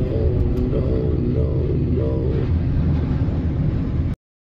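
Heavy, continuous rumble of a derailing freight train, its cars grinding and piling up. Short higher-pitched tones rise and fall over it.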